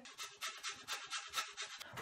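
Clementine peel being zested on a metal grater: a quick, even run of short scraping strokes, several a second.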